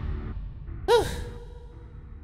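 A voice gives one short 'whew' sigh about a second in, its pitch rising and then falling. Quiet background music underneath fades away.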